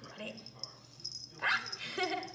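A dog giving one short, loud yip that rises in pitch about one and a half seconds in.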